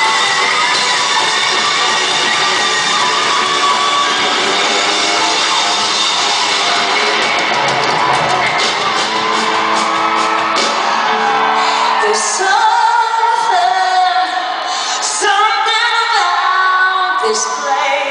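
Live band music in an arena, loud electric guitar over the full band, recorded from within the audience with voices shouting and singing along near the microphone. About twelve seconds in it thins out to sparser held piano chords with a singing voice.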